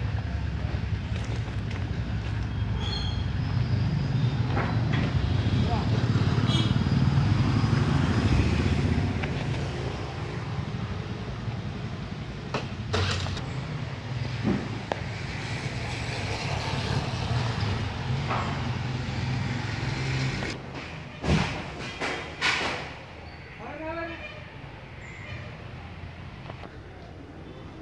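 A motor vehicle's engine running steadily nearby, growing louder towards the middle and dying away about twenty seconds in. A few sharp knocks follow near the end.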